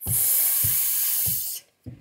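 A person holding a long, unvoiced 'sss', the letter sound of S, for about a second and a half as a word is sounded out. It cuts off suddenly.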